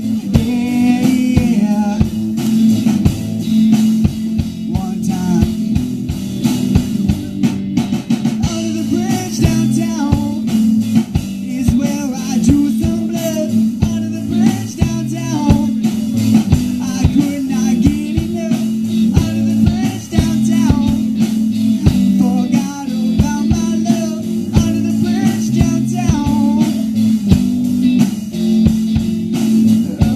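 Live rock band playing a song through a PA: electric bass guitar, guitar and drum kit, with a strong, steady bass line and a regular drum beat.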